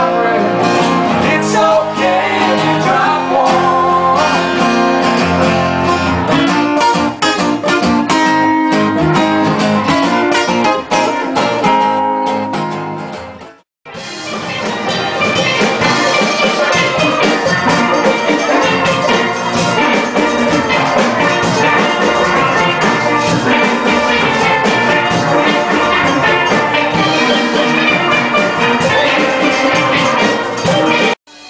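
Acoustic guitars strumming with voices singing, then a sudden cut about fourteen seconds in to a steel drum band playing together.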